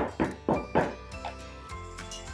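Filled glass preserving jars knocked down on a wooden tabletop, about four quick thunks in the first second, to bring trapped air bubbles up through the oil. Background music with held notes runs under them.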